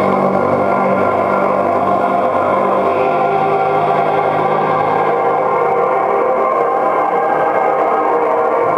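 Live ambient electronic music from a keyboard and effects units: a dense, steady drone of many sustained tones layered with echo. A low tone under the drone fades out about five seconds in.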